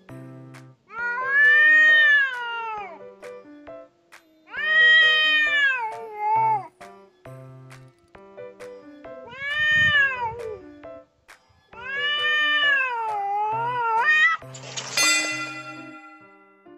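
A stray cat yowling in a standoff with another cat: four long, drawn-out cries that rise and fall in pitch, ending in a harsher outburst near the end. It is the cry of a cat in an agitated, excited state, one that sounds much like a crying baby.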